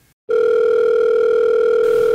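A telephone ringing: one long, steady electronic tone that starts a moment in and holds at an even pitch.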